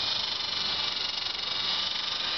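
E-Sky Big Lama coaxial RC helicopter with twin brushless motors flying low as it comes in to land: a steady high-pitched whir of the electric motors and rotor blades.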